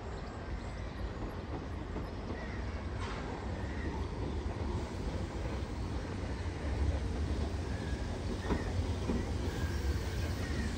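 Class 313 electric multiple unit pulling into a station platform, its low rumble growing steadily louder as it comes closer.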